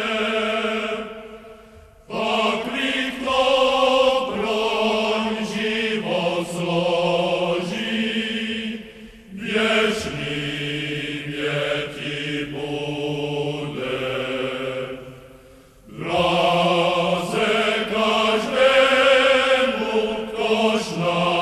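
Background music of chanted singing: voices hold long, wavering notes in phrases, with short pauses between them about two, nine and fifteen seconds in.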